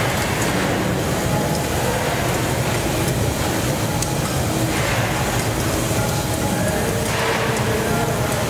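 Steady roar of large gas burners heating a big chapati griddle and cooking pots, with general kitchen bustle.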